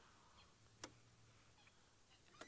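Near silence, with one short click just under a second in.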